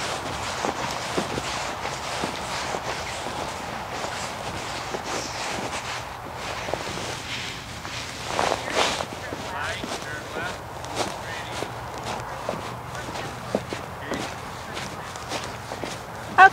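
A horse trotting on the soft dirt footing of a riding arena: a steady run of light hoof thuds over a low hum, with a short louder noise about eight and a half seconds in.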